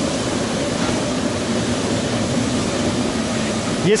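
Inflatable PVC boat hull sliding over snow-covered ice as it is pushed along, a steady hissing scrape.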